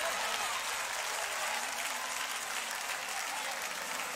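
Congregation applauding steadily, with scattered voices calling out over the clapping.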